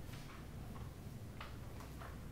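Faint, irregular short scratching strokes of someone drawing by hand, over a low steady room hum.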